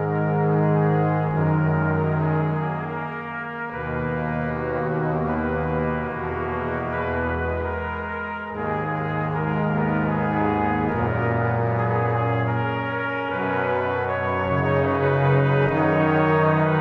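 Slow brass music: sustained chords held for a few seconds each, moving from chord to chord.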